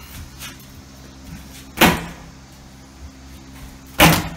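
Demolition knocks from prying up chipboard subfloor with a hammer and pry bar: a few light knocks, then one loud, sharp wooden thump about two seconds in.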